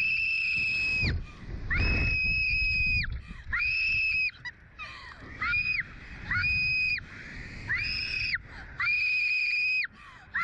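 A girl screaming over and over on a SlingShot reverse-bungee ride: about seven long, high-pitched screams, each held for roughly a second with short breaths between.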